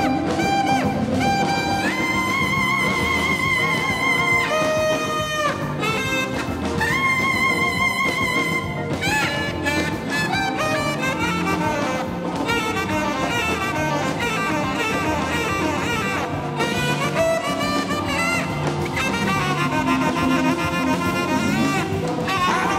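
Tenor saxophone solo over a live band playing blues: long held notes with a wavering vibrato, twice in the first half, then quicker runs of shorter notes.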